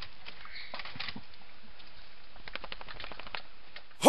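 Quiet background sound with scattered soft clicks and scuffles, and a quick run of ticks about two and a half seconds in.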